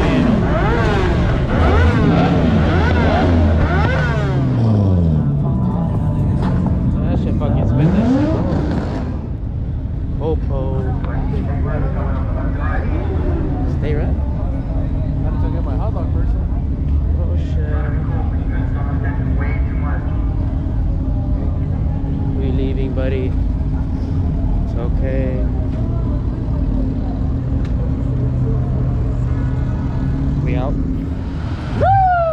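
Vehicle engines revving up and down, loudest in the first nine seconds with rising and falling pitch, then settling into a steadier engine rumble.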